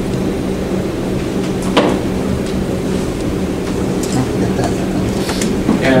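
Steady low hum of a conference room, with faint murmuring voices and a single sharp click about two seconds in.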